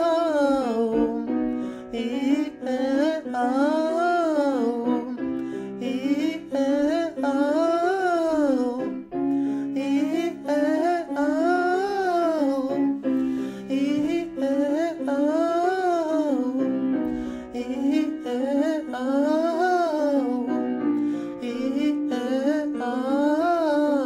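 A man's voice doing vocal warm-up exercises to piano accompaniment. Each phrase climbs and falls back down and lasts about two seconds, and the phrases repeat one after another.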